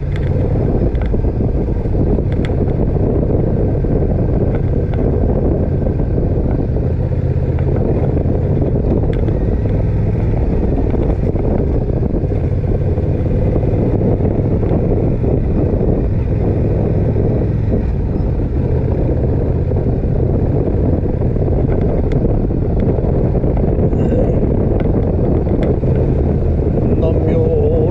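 Motorcycle engine running at a steady, light cruise of about 35 km/h, with road noise. The pitch and level stay even, with no revving.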